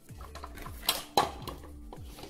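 Two sharp knocks of kitchen things handled on a tabletop, about a third of a second apart, the second louder, over soft background music.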